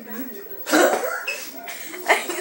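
A boy's voice, with a loud sudden vocal burst about two-thirds of a second in, among unclear talk.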